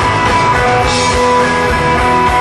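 Rock band playing live, an instrumental passage: electric guitar over a drum kit, with a brighter crash about a second in.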